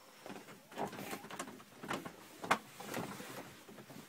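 A few faint, irregular knocks and rustles from someone getting up and moving about while handling a phone.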